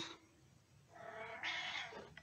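A house cat meowing once, a faint call of about a second starting about a second in.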